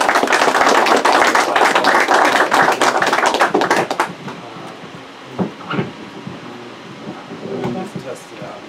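Audience applauding, which dies away about four seconds in, followed by a few quiet voices.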